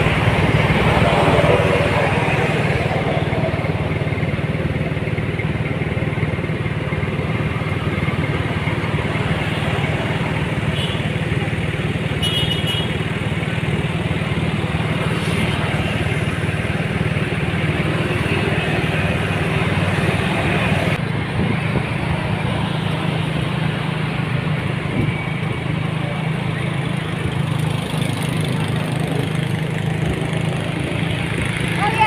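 Motorcycle engine running steadily on the move, with wind and road noise and other traffic passing.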